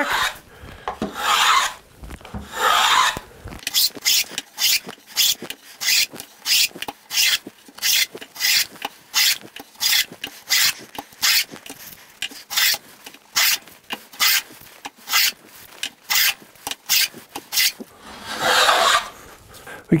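A Stanley No. 55 combination plane cutting an ogee profile along a board's edge, its iron shaving the wood in repeated passes. A few longer strokes come first, then a fast run of short strokes about two a second, then one longer stroke near the end.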